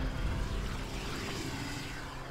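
A low, noisy rumbling drone from the soundtrack, slowly fading between two phrases of background music.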